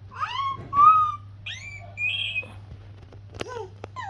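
A run of short, high-pitched squeaky vocal sounds, each sliding up or down in pitch, with a sharp click about three and a half seconds in. A steady low hum runs underneath.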